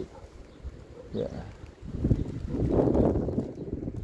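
Wind buffeting the phone's microphone: a rough, low rumble that rises about two seconds in and dies away just before the end, after a short spoken "yeah" about a second in.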